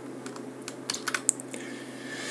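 Computer keyboard keys clicking: a quick run of about eight keystrokes in the first second and a half.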